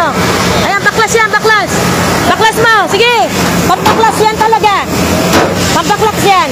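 Men shouting short, loud calls several times, each call rising and falling in pitch, over the steady low running of a fire engine.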